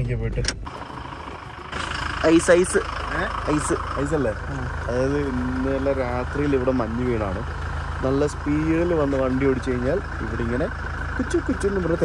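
A man talking over the steady hum of a car engine running. The hum comes in about two seconds in, after a short quieter moment.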